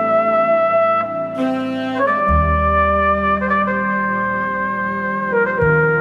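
Smooth jazz played on sampled virtual instruments: a V Horns flugelhorn plays a slow lead melody of long held notes, sliding into some of them with pitch-wheel bends, over a bass line and a string pad.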